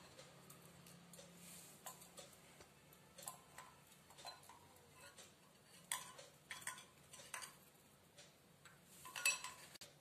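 Faint, irregular light clicks and metallic clinks as the crank of a miniature toy well is turned by hand and a tiny steel pot is wound up on its string. A louder run of clinks comes about nine seconds in, as the pot is lifted out.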